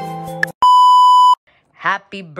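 A single loud electronic beep: one steady high tone lasting under a second that cuts in and out abruptly, right after background music stops.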